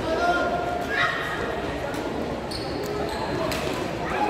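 Badminton rackets striking a shuttlecock during a rally: several sharp hits over the few seconds, echoing in a large hall over a steady background of voices.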